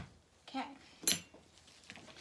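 Soap-making utensils, a stick blender and a silicone spatula, handled over a plastic mixing bowl: one sharp clack with a brief ring about a second in, and a faint tick near the end.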